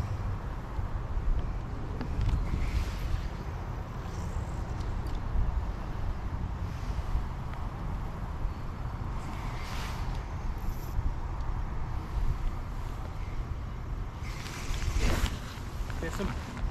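Wind buffeting the microphone over the steady low running noise of a fishing boat on the water, with a few short hissing swishes about three, ten and fifteen seconds in.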